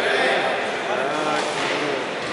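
Indistinct voices of several people talking and calling, echoing in a large hall.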